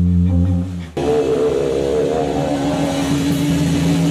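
Distorted electric guitar and bass guitar holding sustained notes. About a second in, the sound briefly drops, then a new chord rings out with a wavering upper note.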